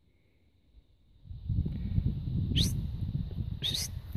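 Low noisy rumble of wind or handling on the microphone that starts about a second in, with two short, high chirps sweeping downward about a second apart.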